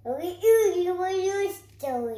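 A toddler's voice singing out one long held note, followed by a shorter falling vocal sound near the end.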